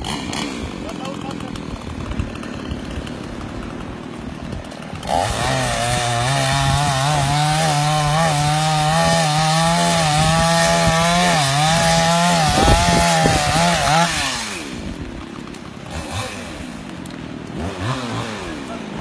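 Chainsaw running at low speed for about five seconds, then held at full throttle for about nine seconds as it cuts fallen tree branches, its pitch wavering under load, before dropping back with a falling pitch.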